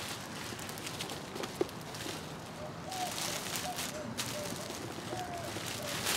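Thin plastic dry-cleaner bag rustling and crinkling as a seed tray is handled inside it, with a sharp tick about a second and a half in and busier crackling in the second half.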